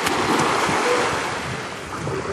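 Small waves washing onto a sandy beach in shallow water, a steady surf noise that eases slightly toward the end.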